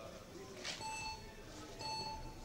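Electronic start signal of a speed-climbing wall: two steady beeps about a second apart, each lasting about half a second. These are the countdown tones that come before the final start tone.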